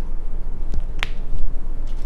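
A single sharp click about halfway through as a highlighter pen is handled over a notebook, with a steady low rumble underneath.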